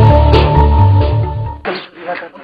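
A TV commercial's soundtrack playing over a hall's loudspeakers: music with a heavy pulsing bass beat and a held tone. It cuts off abruptly about one and a half seconds in.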